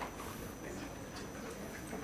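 Quiet room tone with a faint steady high whine, broken by a few faint, irregular small clicks.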